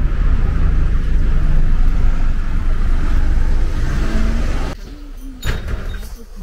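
Street traffic: a motor vehicle running close by with a loud, steady low rumble, cut off suddenly near the end by a quieter indoor room.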